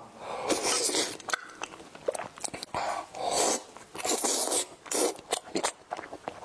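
Close-miked chewing of a soft bread roll filled with cheese cream and purple sticky rice: irregular bursts of wet mouth sounds with small sharp clicks.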